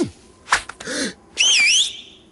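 Cartoon sound effects: a sharp click, then a short low rising-and-falling tone, then a loud whistle about one and a half seconds in, its pitch wavering down and up for half a second.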